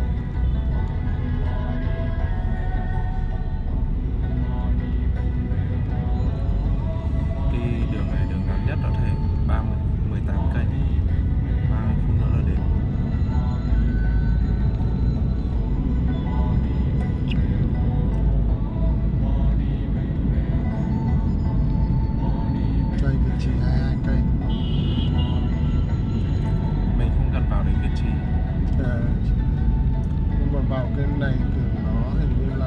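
Steady low road and engine rumble inside a moving Mercedes-Benz car's cabin, with music and voices playing over it.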